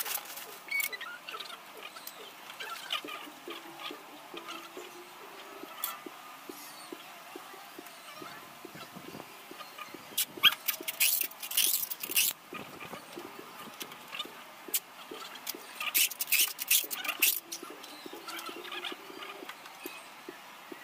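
A bamboo pole being handled and worked by hand: scattered clicks and knocks, with two louder bursts of scraping, about ten and sixteen seconds in.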